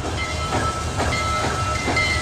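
Passenger train sound effect: a steady low rumble with hiss and a faint thin high whine.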